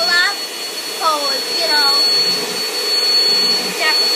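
Vacuum cleaner motor running with a steady high-pitched whine over a rushing hiss.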